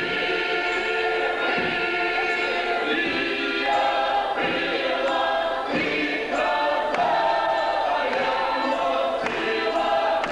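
Mixed male and female folk choir singing a Ukrainian folk song in harmony, in sustained phrases that change every second or two.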